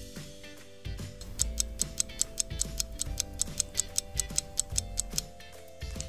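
Clock-ticking sound effect, about five quick ticks a second starting a second and a half in, over soft background music with held notes.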